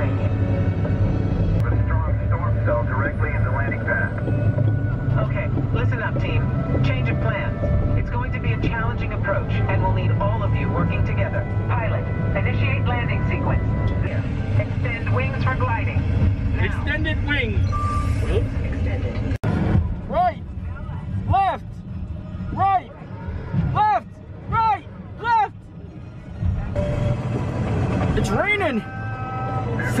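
Simulator ride soundtrack inside a Mission: Space capsule: music and voice-like audio over a steady low rumble of the simulated spacecraft. About two-thirds of the way through, the rumble drops away, leaving short repeated tonal calls about once a second.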